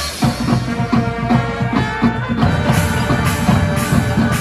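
Marching band playing: brass chords held over rapid, driving drum strokes that come in about a quarter-second in, with cymbal crashes at intervals.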